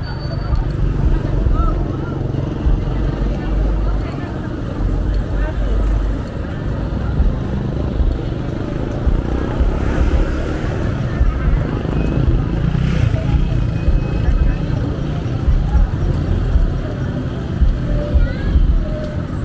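Roadside traffic ambience: motorcycles and tricycles passing, one going by close about ten seconds in, over people talking nearby and a steady low rumble.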